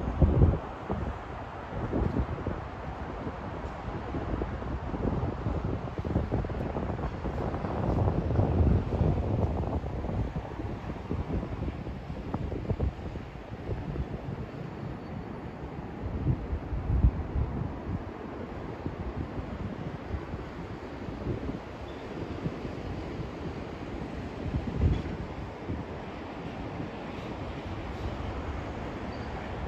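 Wind buffeting the microphone in irregular low gusts, with the strongest about a second in, around eight to nine seconds, around seventeen seconds and near twenty-five seconds, over a steady low background rumble.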